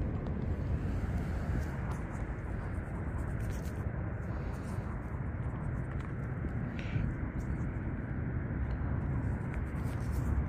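Wind buffeting the microphone as a steady low rumble, with faint rustles and ticks of fingers working in loose soil.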